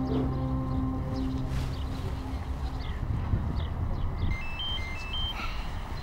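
A mobile phone ringing with a simple ringtone of short beeps stepping up and down in pitch, starting about four seconds in. Under the first half a held music chord fades out.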